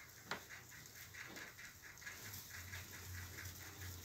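Faint sounds of a pot-bellied sow and her newborn piglets stirring in straw bedding: a soft click, then a quick run of faint ticks at about five or six a second. A low steady hum comes in a little past halfway.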